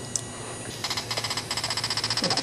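Laser tag turret's small speaker playing its firing sound effect: a rapid, even electronic stutter of high pulses that starts just under a second in, after a single short click.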